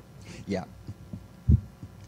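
A man says "yeah", then a single short, loud, low thump about a second and a half in.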